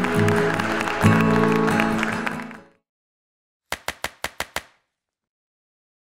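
Applause with closing music underneath; both cut off about two and a half seconds in. After a short silence comes a quick run of six short, evenly spaced clicks.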